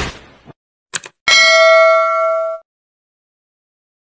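Subscribe-button animation sound effect: a noisy burst fading out, a short click about a second in, then a single bell ding that rings for just over a second and stops.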